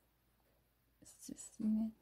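Near silence at first, then about a second in a voice begins to speak.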